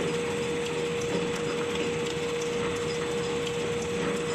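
L-fold dispenser napkin machine with two-colour printing running steadily: continuous mechanical clatter over a steady hum, with faint repeated ticks.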